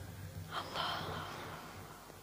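A boy's sharp intake of breath close to the microphone, about half a second in and lasting about half a second, over a faint low hum.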